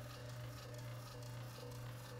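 Steady low hum with faint higher tones above it, unchanging and with no distinct events.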